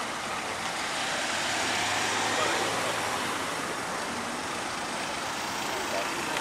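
A motor vehicle passing close by: engine and road noise swell to a peak about two seconds in, then fade away.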